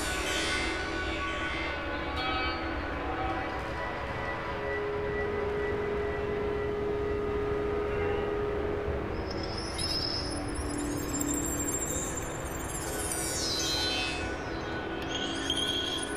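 Experimental electronic drone music from software synthesizers: layered sustained tones, with a held mid-pitched tone through the middle and several falling high-pitched sweeps, a few near the end.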